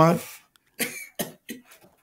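A man's short, breathy vocal bursts, four in quick succession, just after his speech trails off.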